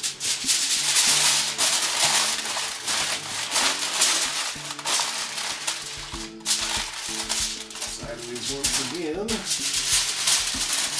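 Aluminium foil crinkling and rustling continuously as it is folded and pressed around a large brisket, with music playing faintly underneath.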